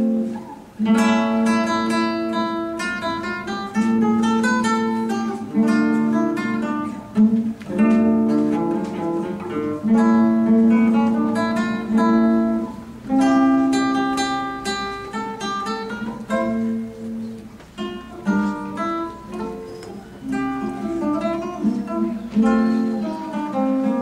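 Solo nylon-string classical guitar played fingerstyle: a continuous flow of plucked melody notes over bass notes and chords, each note ringing and fading.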